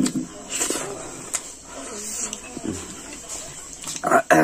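Close-up mouth sounds of a man eating with his fingers: chewing and lip-smacking, with a few short hissy smacks or breaths and a click. Faint murmured voice runs underneath.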